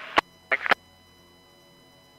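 Two-way radio channel at the end of a transmission: a sharp click, a brief clipped word, then a steady faint hum with thin electronic tones on the open channel.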